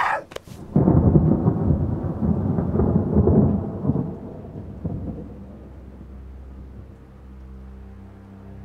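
A couple of short sharp knocks, then a deep rumble that comes in suddenly about a second in and dies away over about four seconds, giving way to low held music tones.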